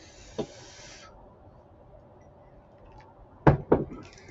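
Two quick thumps close together near the end, the loudest sounds here, over faint background noise with a brief hiss and a small click in the first second.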